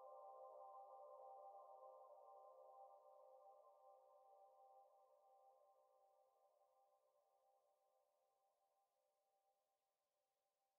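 Faint closing chord of an emotional trap instrumental beat: several steady tones held together with no drums, fading out slowly to near silence.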